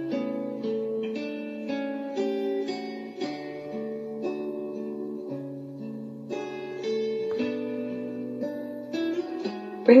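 Slow, soft meditation background music of plucked string notes, one note or chord after another, with no voice over it. The narrating voice comes back in right at the end.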